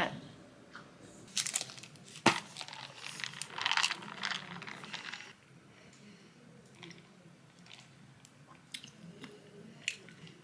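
Small handling sounds from a plastic boba tea cup and straw: rustling and a few sharp clicks, the loudest about two seconds in, then quiet sipping through the straw.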